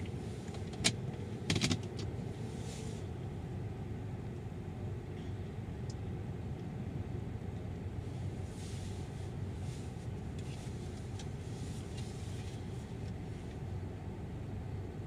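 A car idling, heard from inside the cabin as a steady low rumble. A sharp click comes about a second in, with a short cluster of clicks just after.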